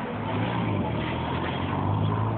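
Street traffic: a steady low engine hum from nearby vehicles over general road noise.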